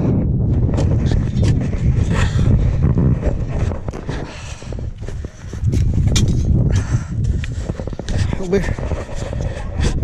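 Irregular footsteps crunching over burnt brush and ash, with wind rumbling on the microphone.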